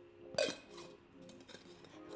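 Stainless steel water bottle and its metal cap clinking as the cap is handled and put back on after a drink: one sharp clink about half a second in, then a few faint ticks.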